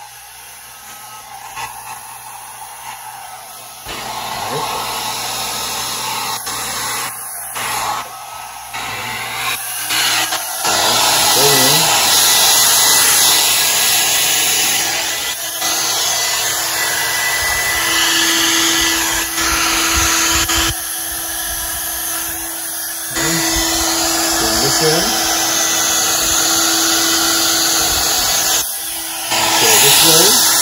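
Handheld hair dryer blowing a steady rush of air. It comes in a few seconds in and gets louder from about ten seconds, with a few brief dips. From about halfway, a steady humming tone runs under the rush.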